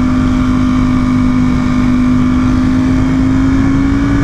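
Sport motorcycle engine running at a steady highway cruise, its note holding nearly constant and rising slightly in pitch, under heavy low wind and road noise.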